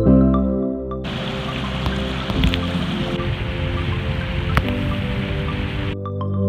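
Background music for about a second, then a small stream running over stones: a steady rush of water with a few sharp clicks, the music continuing faintly beneath it.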